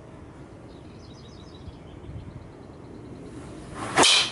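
Low wind rumble on the microphone with faint high bird chirps, then just before the end a single loud, sharp crack of a Ping G LS Tec driver striking a golf ball off the tee, a flush, well-struck drive.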